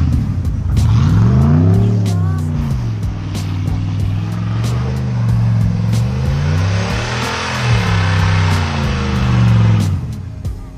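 Pickup truck's engine revving up and down in long sweeps as it spins its tires through deep snow, with the revs peaking about a second in and again around seven to eight seconds in.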